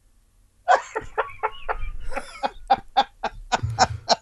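A man laughing hard: after a short silence, a quick run of short laughs, about four a second.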